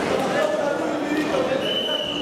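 Voices calling out across a large, echoing indoor sports hall over a steady murmur of the room. A thin, steady high tone comes in near the end.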